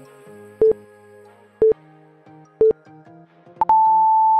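Workout interval timer counting down: three short beeps a second apart, then one longer, higher beep near the end that marks the start of the next work interval, over background music.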